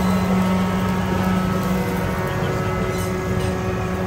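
Steady electric fan motor hum with a low drone and several faint overtones, blowing across a smoking charcoal grill of mutton skewers, with a faint hiss over it.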